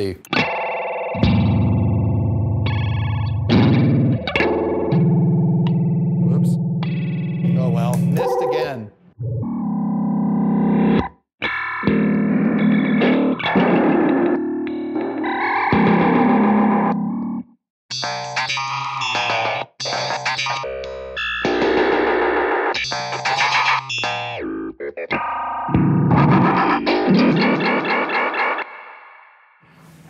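Electric guitar, a 1959 Fender Jazzmaster, through a fast fake-rotating-speaker pedal, looped and chopped by a Korg Kaoss Pad into stuttering fragments that start and cut off abruptly, with a few short gaps, fading out near the end.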